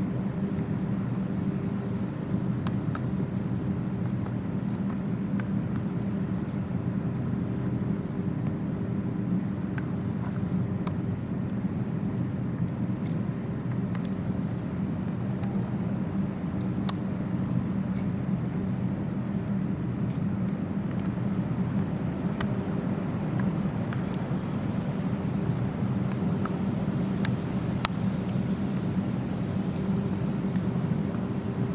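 Steady low mechanical hum, with a few faint clicks scattered through it.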